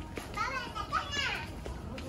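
A small child's high-pitched wordless cries, a few short ones that rise and fall in the first part.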